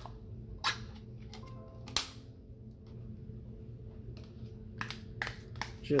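Scattered sharp clicks and taps of a metal utensil against a plastic measuring cup as thick condensed cream of chicken soup is scooped out, with a cluster of taps near the end, over a steady low hum.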